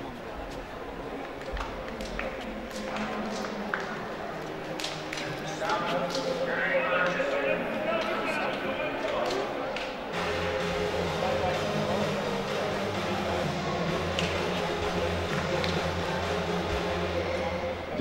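Indistinct chatter of many people echoing in a large indoor athletics hall, with occasional light knocks and taps.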